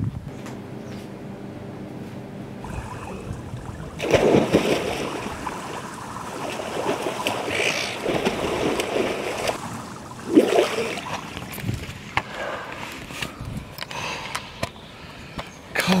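Water splashing in a swimming pool: a loud splash about four seconds in, then the uneven splashing of swimming strokes.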